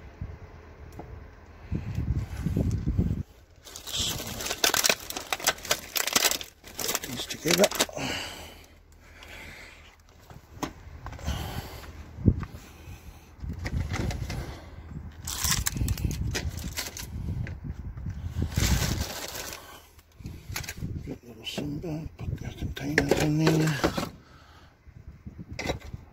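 Plastic trash bags rustling and crackling as they are poked and shifted with a stick inside a steel dumpster, with handling noise on the microphone. A few muttered, voice-like sounds come near the end.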